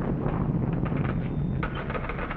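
Thunderstorm sound effect on an old television soundtrack: a steady, noisy rumble of thunder and rain, with a few light knocks near the end.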